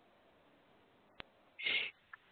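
Conference-call line with a faint steady hiss, broken by a single sharp click a little past halfway and a brief high-pitched noise near the end.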